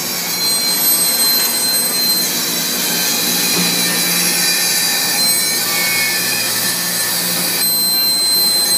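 Wire-spooling machine running as it winds metal wire onto a take-up spool: a steady mechanical whir with a thin high whine that drops out for a few seconds and returns near the end.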